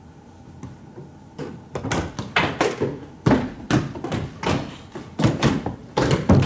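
Audience members tapping their tables one after another. The scattered knocks start about a second and a half in and come thicker and louder toward the end. Each tap is a person's guess that thirty seconds have passed.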